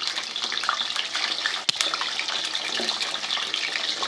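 Fish pieces frying in hot ghee in a pan: a steady sizzle, with one sharp click near the middle.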